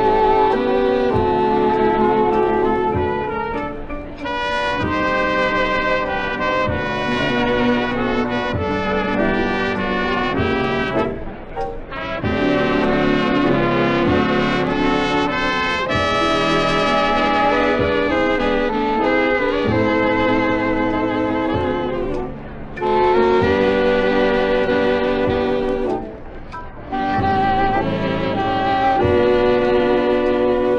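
A big-band dance orchestra playing an instrumental passage in waltz time, brass and saxophones carrying the melody over a steady bass beat, with short breaks between phrases; heard as an old radio broadcast recording.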